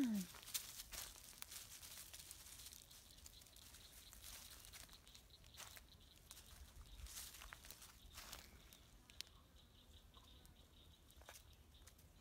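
Faint, scattered crackling and rustling of dry fallen leaves being stepped on and pushed through, in short irregular crunches.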